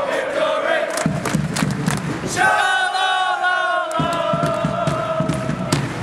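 Football supporters' group chanting together while marching, with a drum beating under it; the voices hold one long drawn-out note about halfway through.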